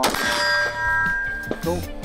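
A single AR-15 rifle shot, then a steel target ringing with a clear metallic tone that fades over about a second and a half.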